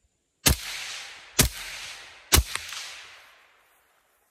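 Three gunshots from an 11.5-inch AR-15 pistol, fired about a second apart, each sharp report trailing off in an echo.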